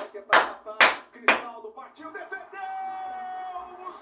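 A man clapping his hands slowly, sharp claps about two a second that stop after about a second and a half.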